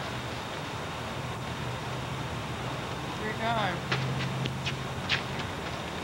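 Distant voices of players on an outdoor basketball court over a steady hiss and low hum of the recording. A short call comes about halfway through, followed by a few sharp clicks.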